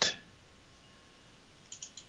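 Near silence, broken near the end by two or three quick, sharp computer-mouse clicks.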